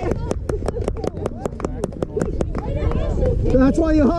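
A fast run of sharp, evenly spaced claps, about six a second, for the first two and a half seconds, with voices under them, then shouting voices near the end.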